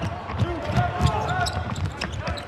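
Basketball dribbled on a hardwood court during play, a run of short bounces, with brief shouts from players on the court.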